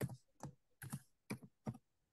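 Quiet typing on a computer keyboard: about five or six separate keystrokes at an uneven pace, roughly two or three a second.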